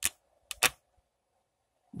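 A computer mouse clicking: one short click, then two more close together about half a second in, over a faint steady hum.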